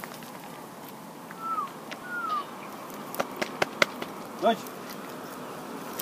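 A man calling his dog outdoors. Two short falling whistle notes come about a second and a half in, then a few sharp clicks between three and four seconds, and a brief call in his voice about four and a half seconds in, all over a steady outdoor hiss.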